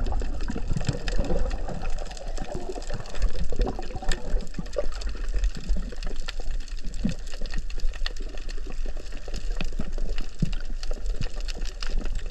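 Underwater sound of the sea picked up by a snorkeller's camera: a steady muffled rush of water with a low rumble and many scattered small clicks and crackles.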